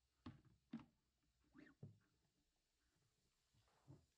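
Near silence, with a few faint knocks and bumps of plastic pad-washer parts being handled: the catch basin lifted out of the bucket and set down. Most knocks fall in the first two seconds, with one more near the end.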